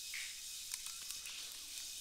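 Faint computer keyboard typing, a few scattered light key clicks, over a steady microphone hiss.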